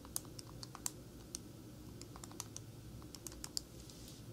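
Keys of a calculator being pressed in a quick, irregular run of light clicks as a calculation is entered.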